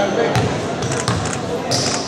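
A basketball bouncing several times on a hardwood gym floor, quick low thuds about half a second to a second in.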